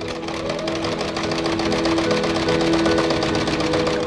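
Electric sewing machine stitching at a fast, steady pace: an even, rapid clatter of the needle mechanism that stops abruptly at the end. Steady background music plays alongside it.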